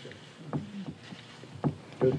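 Quiet room tone in a meeting room, with two brief faint sounds, about half a second in and near the end.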